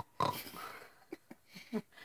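A girl laughing with nasal snorts: a sharp snort at the start trailing into breathy laughter, then a few short snorts near the end.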